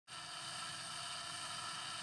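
Cartoon wind-up sound effect for a turning wind-up key: a steady mechanical whirring with several high tones over a rough low rattle, starting abruptly.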